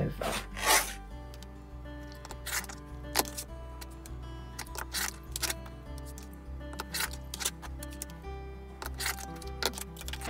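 Background music of held notes over a slowly changing bass line, with a few brief clicks and rustles of fabric and a quilting ruler being handled on a cutting mat.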